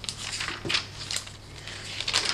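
Thin pages of a journaling Bible being turned by hand: a few short papery rustles and crinkles.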